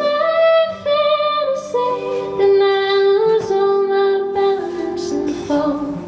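A woman sings long held notes, stepping in pitch, over acoustic guitar and keyboard accompaniment. The voice stops near the end, leaving the guitar and keyboard playing.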